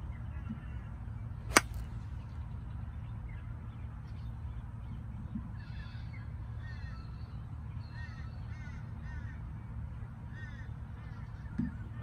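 A three-iron striking a golf ball once, a single sharp click about a second and a half in; the ball was caught thin. Birds call repeatedly in the background through the second half.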